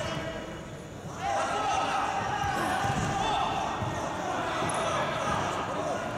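Indistinct voices echoing in a large indoor hall, getting louder about a second in, with occasional dull thuds.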